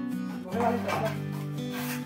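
A mason's trowel scraping cement mortar in a pan, one scrape about half a second in and another near the end, over soft background music with steady held notes.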